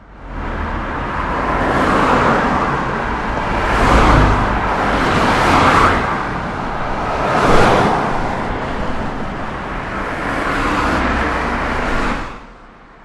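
Road traffic: cars driving by one after another, their tyre and engine noise swelling and fading as each passes, loudest about four and seven and a half seconds in.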